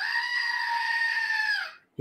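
Novelty screaming-goat desk toy letting out one long recorded goat scream, about a second and a half, its pitch sagging as it dies away.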